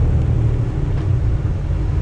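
Semi truck's diesel engine and road noise heard inside the cab while driving at a steady speed, a steady low rumble.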